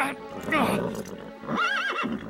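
Cartoon horse whinnying twice, the second a quick warbling whinny near the end, over background music.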